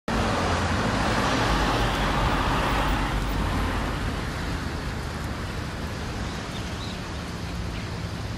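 A car driving past on the road beside the promenade; its tyre noise is loudest for the first three seconds and then fades to a steady background of traffic.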